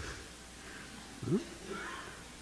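Quiet room with a single short, rising voiced chuckle a little over a second in, a laugh at a joke just made, followed by faint murmuring.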